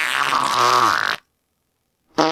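A long, low fart sound effect that cuts off abruptly after a little over a second.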